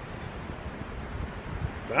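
Low, steady wind noise on the microphone with no distinct events, before a voice starts at the very end.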